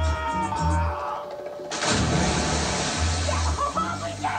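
Soundtrack music with a pulsing bass line, and a loud splash about two seconds in as bodies hit the water, the rush of noise fading over a second or so.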